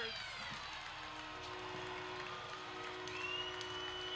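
Ice hockey arena after a goal: faint crowd noise and scattered applause, with a steady held tone coming in about a second and a half in and a higher tone joining near the end.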